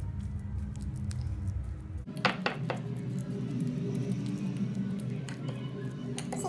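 A metal fork mashing soft banana on a ceramic plate, with a few sharp clinks of the fork against the plate a little after two seconds in, over background music.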